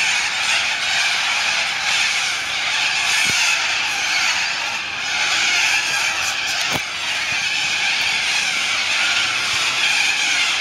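A large flock of cockatoos calling together in the treetops at their evening roost: a loud, unbroken din of many overlapping harsh calls.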